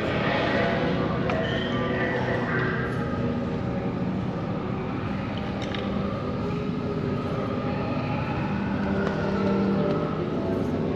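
Steady, dense rumble and hum from a dark ride's sound-effects track, heard from a moving ride vehicle.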